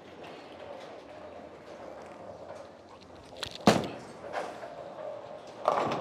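Bowling ball rolling down a wooden lane with a low, steady rumble, then a sharp crash of pins about three and a half seconds in, followed by smaller pin clatter. The ball struck the head pin and did not carry a strike.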